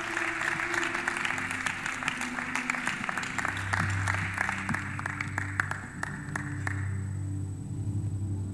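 Congregation applauding, the clapping dying away near the end, over a church keyboard holding soft low sustained chords.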